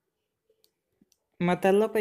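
Near silence broken by a few faint, short clicks, then a narrator's voice speaking Hindi from about a second and a half in.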